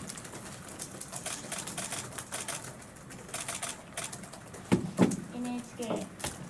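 Reporters' laptop keyboards typing: a steady patter of quick, light key clicks. A person's voice makes a short low sound near the end.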